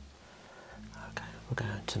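Soft-spoken voice beginning about a second in, with two sharp clicks among the words.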